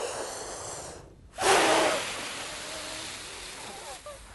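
A breath drawn in, then, about a second and a half in, a long, steady blow of air through open lips held against a hanging sheet of newspaper: a breath-control exercise for a wind player, loudest at the start and slowly fading as the air runs out.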